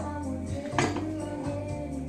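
Background music over a wooden spoon stirring stiff fudge mixture in a stainless steel saucepan, with one sharp knock of the spoon against the pan a little under a second in.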